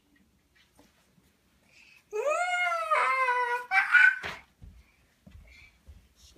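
A young child's long, high-pitched squeal about two seconds in, sinking slightly in pitch, followed at once by a shorter, higher squeal.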